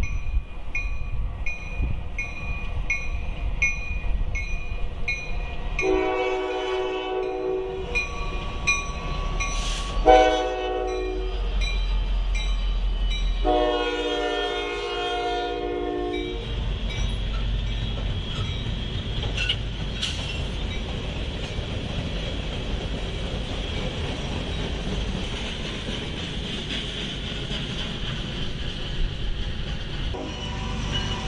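Grade crossing bell dinging about twice a second, then a Norfolk Southern diesel freight locomotive sounds its horn in three blasts, the last the longest. The train passes the crossing with a steady low rumble of engines and wheels.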